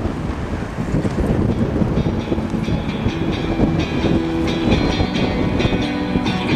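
Steady rumble of wheels rolling over asphalt with wind on the microphone; guitar music comes in about two seconds in.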